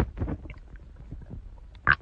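Stomach gurgling and rumbling in irregular low bursts, set off by a glass of mineral water just drunk, with a short sharp burst near the end.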